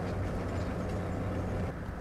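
A steady low rumbling hum with no voices, a background drone under the scene.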